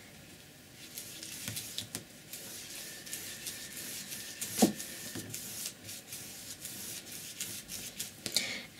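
Wide flat brush with paint rubbing back and forth across heavy watercolour paper, a faint scratchy swishing, with a brief sharper click about halfway through.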